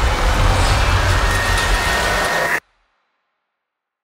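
Horror trailer sound-design hit: a dense rumbling noise with a steady high tone coming in about halfway, cut off abruptly about two and a half seconds in.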